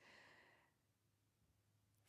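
Near silence, with a faint breath out fading away in the first half second as she stretches out on the mat.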